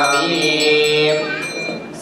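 A man chanting a Sanskrit mantra into a microphone in a sing-song recitation. He draws out a long held note around the middle, and the voice fades toward the end.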